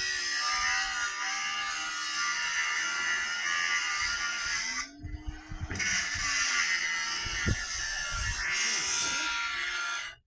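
Cordless angle grinder with a cutting disc grinding through the scooter's metal frame, a steady high-pitched grinding noise. It stops for about a second midway, then cuts again.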